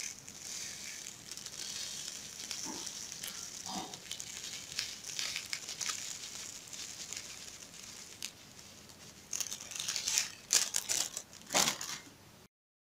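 A small plastic bag crinkling as it is squeezed and shaken to sprinkle loose rhinestones onto a plastic-film sheet, with the light clicking of scattering stones. The crinkling grows louder in a few bursts near the end.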